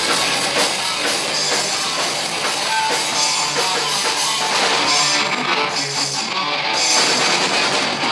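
Punk rock band playing live: electric guitars, bass guitar and drum kit together in a steady, full-band passage of the song.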